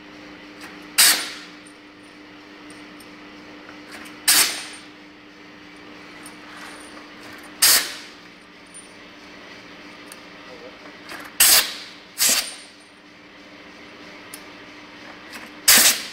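A workshop tool working undersized pipe nuts one at a time in a jig: six short, sharp bursts, mostly three to four seconds apart, each fading within half a second. A steady faint hum runs beneath.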